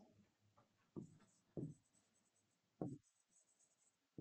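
Faint pen writing on a board: three short, soft strokes in near silence.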